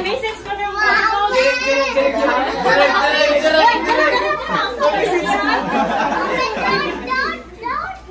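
Excited chatter of a group of children and adults talking and calling out over one another in a room, with children's voices prominent.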